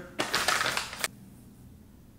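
Plastic stand-up pouch crinkling as it is handled and tipped to pour, a rapid crackling rustle for about a second that ends in a sharp click.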